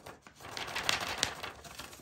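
A sheet of paper rustling and crackling as it is handled and slid across the work mat, with a few sharp crinkles from about half a second in.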